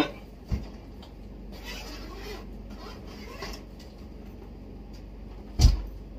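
A hard-shell suitcase being handled on a bed: a dull thump about half a second in, some rustling, and a louder thump near the end as it is laid open.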